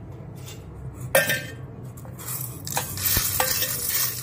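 Roasted dried red chillies being dropped and pressed by hand into a stainless-steel mixer-grinder jar: a sharp clatter about a second in, then irregular crackling and rattling of the brittle chillies against the steel.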